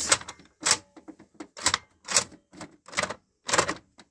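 Vintage Fisher-Price 'Count Your Chickens' counting toy clicking as its plastic number buttons are pressed: a run of sharp clicks, about two a second.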